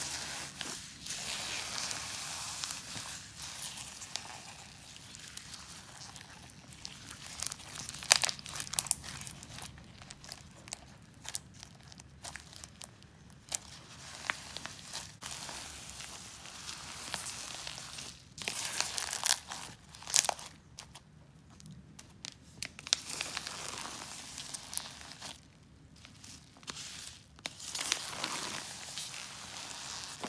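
Hands kneading and squeezing a big batch of foam-bead crunch slime: the packed foam beads crackle and crunch with many sharp little clicks, in uneven bursts with short quieter pauses.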